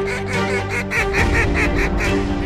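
Geese honking in a quick series of calls, about five a second, over steady background music.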